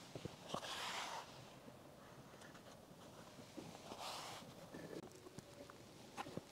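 A horse blowing out through its nostrils twice, two short breathy snorts about three seconds apart, with faint soft steps and small clicks between them.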